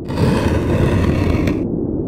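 Sound effect of a heavy stone wall sliding aside: a grinding scrape that lasts about a second and a half and stops abruptly, over a low rumble.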